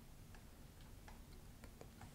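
Near silence: room tone with several faint, irregular clicks from a computer mouse scroll wheel.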